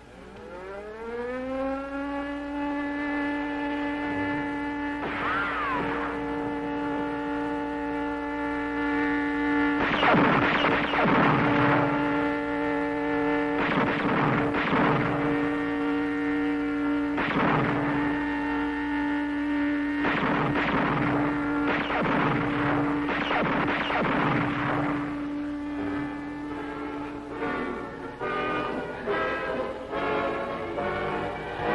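A sustained, organ-like musical drone that rises in pitch at the start and is then held on one note, with a string of repeated pistol shots over it, about a dozen bangs in clusters from about five seconds in until near the end.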